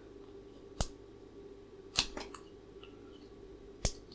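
Screwdriver tip prying at a zener diode's legs on a small circuit board, metal clicking against the board and leads in three sharp clicks about a second apart, the middle one followed by two fainter ticks.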